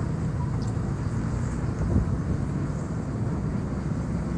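Steady low outdoor rumble with no distinct events: the background noise of the street below, heard from high up on a building.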